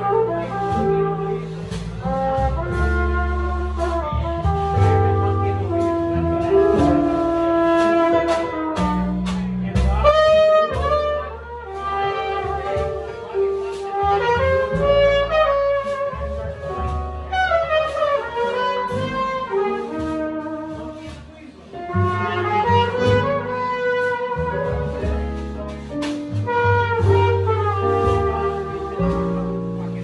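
Small jazz group playing live. A trumpet carries the melody with vibrato over piano, upright bass and drums.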